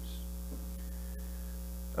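Steady low electrical hum, mains hum carried on the recording, unchanging throughout.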